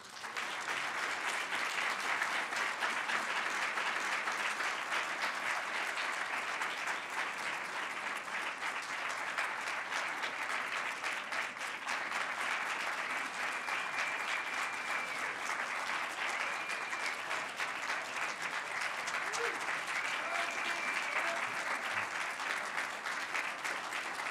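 An audience applauding steadily and at length, with a few voices calling out in the second half.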